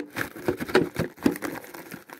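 Plastic packet crinkling, with quick irregular clicks and light knocks, as a packaged replacement metal agitator is worked into an upright vacuum cleaner's brush housing.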